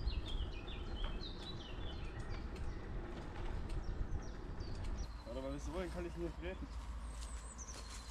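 Wind and road rumble on the microphone of a moving bicycle, with small birds chirping in the first second and again near the end. A short voice is heard about five seconds in.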